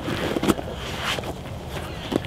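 Thick neoprene wetsuit rubbing and squeaking as it is tugged down over the head and body, in irregular rustles with a sharp click about half a second in.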